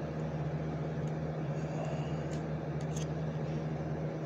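Steady low electrical hum of a running room appliance, with a few faint small clicks as a pocket ferro rod is worked out of its slot in a Victorinox Champion Swiss Army knife.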